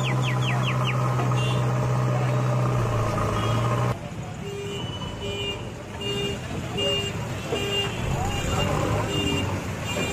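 JCB backhoe loader's diesel engine running with a steady hum. After a sudden change about four seconds in, an electronic reversing beeper sounds repeatedly, about one beep every three-quarters of a second, over voices.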